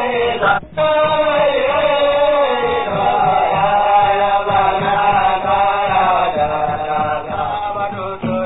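Hausa praise song: voices chanting in long, slowly bending held lines, with a brief break about a second in.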